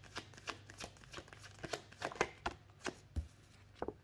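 Tarot cards being shuffled by hand: a run of quick, irregular soft flicks and taps of the cards against each other, thinning out a little before the end with one duller knock.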